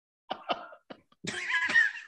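A man's short non-speech vocal bursts: three quick ones in the first second, then a longer, louder one with a wavering pitch near the end.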